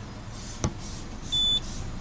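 A sharp click, then a single short high-pitched electronic beep about a second and a half in, from the Peugeot 408's dashboard, heard inside the cabin.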